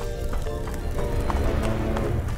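Background music with quick running footsteps over it: a cartoon sound effect of someone running at a fast pace.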